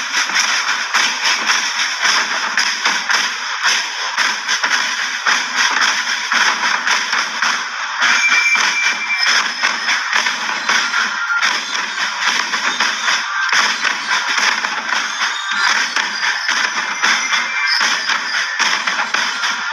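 Loud music played over outdoor loudspeakers, running without a break.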